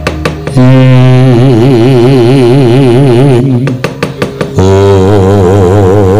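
A man singing a dalang's suluk in a wayang kulit performance: two long, low held notes with a strong wavering vibrato, the second a little lower than the first. A quick run of sharp knocks comes at the start and again in the break between the notes.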